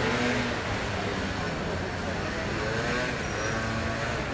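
Steady street traffic noise, with indistinct voices talking in the background.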